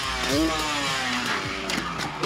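Freestyle motocross dirt bike engine with a short rising blip about a quarter second in, then a note that falls in pitch, over a rushing noise.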